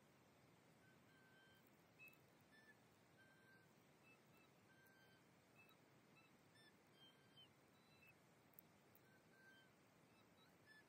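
Near silence: faint background hiss with scattered short, high chirps throughout.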